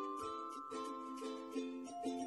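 Background music of soft plucked-string chords, with a simple melody above.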